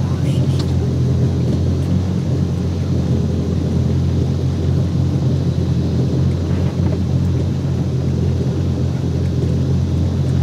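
Twin jet-drive engines of a Yamaha 242 Limited jet boat idling, heard from on board as a steady low drone that holds the same pitch and level throughout, while the boat backs slowly in reverse at idle.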